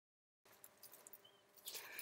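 Near silence: nothing at all for the first half second, then only faint room tone.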